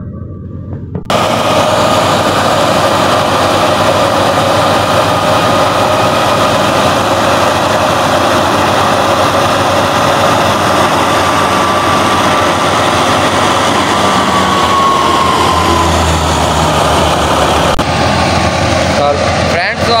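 Tractor-powered wheat thresher running steadily while threshing wheat: a loud, even din of the threshing drum and the tractor engine driving it, starting abruptly about a second in.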